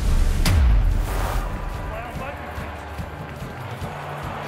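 Transition sound effect for a countdown graphic: a deep bass boom with a sharp hit about half a second in and a short whoosh just after, then quieter sound to the end.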